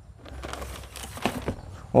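Faint rustling with a few light knocks as things are handled by hand.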